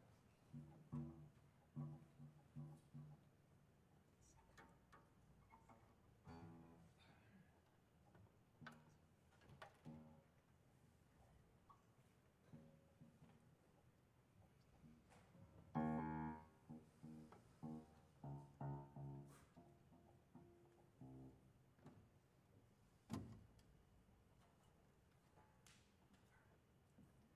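Grand piano strings sounding from inside the instrument, with small objects set on the strings: sparse, quiet short notes and light clicks. A louder cluster of notes comes about halfway through, more notes follow shortly after, and there is a sharp click near the end.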